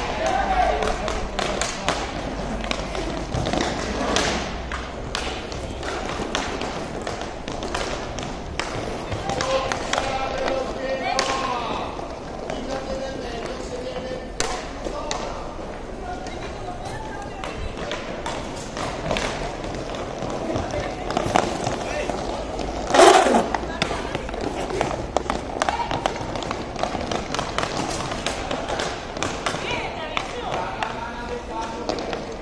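Inline hockey play: repeated sharp knocks and clacks of sticks and puck, with distant shouting from players and spectators. The loudest moment is a single loud knock or shout about three-quarters of the way through.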